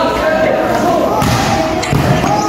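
A volleyball struck by hand during a rally, with a couple of thumps about a second apart, over the players' voices.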